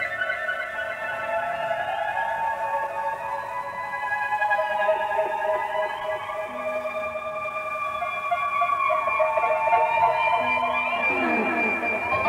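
Live psychedelic rock band playing long, held electric tones that glide slowly up and down in pitch, with a sweep of sliding notes near the end, heard through a 1970 audience reel-to-reel tape recording.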